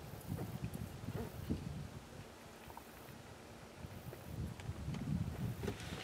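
Wind buffeting the camera microphone: an uneven low rumble that eases off in the middle and rises again near the end, with a couple of faint handling clicks.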